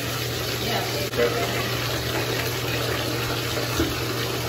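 Bathtub faucet running, a steady unbroken stream of water pouring from the spout into the tub.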